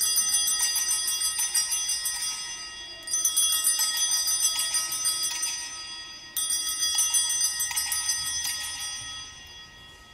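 Sanctus bells, a cluster of small altar bells, rung three times about three seconds apart, each ring fading away. They are the bells rung at the elevation of the host during the consecration.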